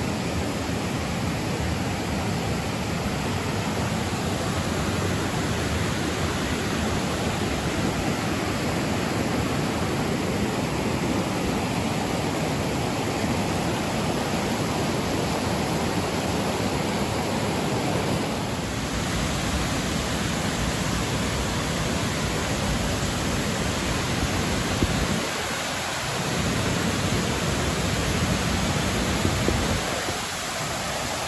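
Steady rushing of a river pouring over granite ledges and a waterfall, loud and unbroken.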